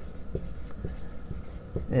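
Dry-erase marker writing on a whiteboard: a run of short strokes and light taps as figures and letters are written.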